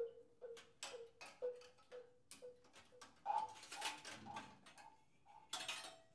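Sparse free-improvised music: a run of sharp clicks about two a second, each with a short ringing note, followed about three seconds in by a hissy burst with a held higher tone, played by a tuba and percussion/electronics trio.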